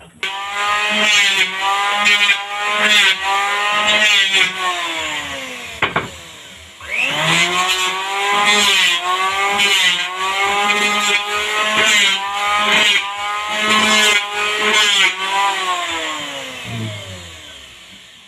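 Corded electric hand planer running loud and high-pitched, its whine wavering in pitch as the blades cut the board. It is switched off and spins down about six seconds in, starts up again about a second later, and winds down near the end.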